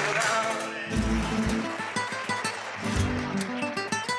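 Live flamenco music: acoustic guitar playing plucked and strummed notes, with sharp percussive taps and low thumps about a second in and again near three seconds.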